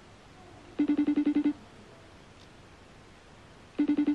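Ringback tone of an outgoing phone call heard through the phone's speaker: two short buzzing rings about three seconds apart while the call waits to be answered.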